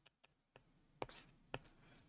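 Faint writing sounds of a stylus on a tablet: a few light ticks, then a sharper tap about a second in followed by a brief scratchy stroke, and another tap about half a second later.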